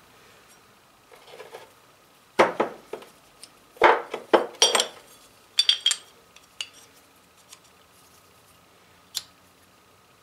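Metal parts clinking and tapping as a piston and its steel wrist pin are handled on a workbench: a cluster of sharp metallic clinks from about two to six seconds in, then a few lighter ticks.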